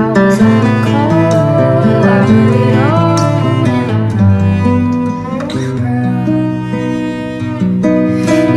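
An acoustic guitar being plucked and a bowed cello playing together as a duet, with a woman singing over them.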